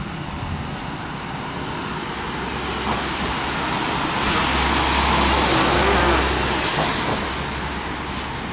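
A van drives past close by, its engine and tyre noise building to a peak about five to six seconds in and then fading, over steady city traffic noise.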